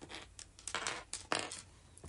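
Handling noise close to the microphone: a few light clicks and a short rustling hiss just before the middle, then a sharper click a little after.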